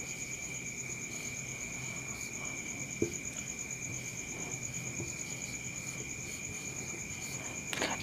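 Steady high-pitched trilling of crickets, with a single soft tap about three seconds in.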